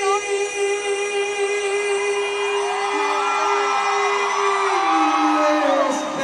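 Live band holding a sustained chord with no drums or bass, while crowd voices and whoops rise over it; the held low note steps down in pitch about a second before the end.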